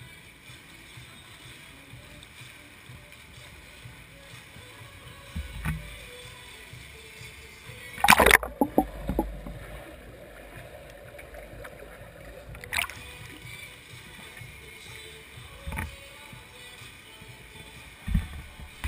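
Echoing indoor swimming pool with swimmers splashing. About eight seconds in there is a loud splash and the sound turns muffled as the action camera goes underwater, staying dull for about four seconds before it comes back up into the open pool sound.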